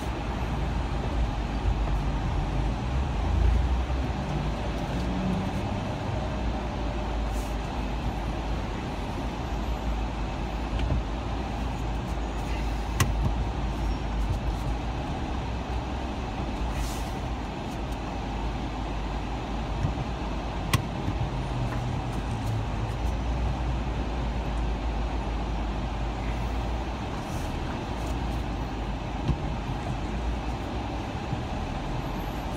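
Steady low rumble of a car's engine and tyres heard from inside the cabin while driving in traffic, with a couple of sharp clicks near the middle.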